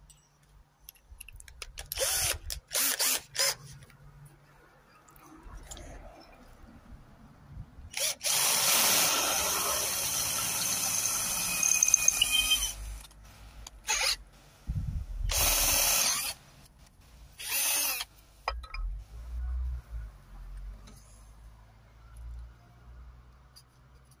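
Cordless drill boring through a thin metal bracket: a steady run of about five seconds in the middle, with a high squealing tone near its end. Several shorter bursts come before and after it.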